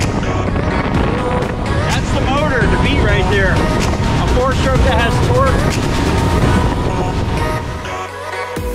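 Mercury 300 hp outboard running at speed with rushing wind and water noise as the boat rides through chop, overlaid with background music and a voice that wavers in pitch in the middle.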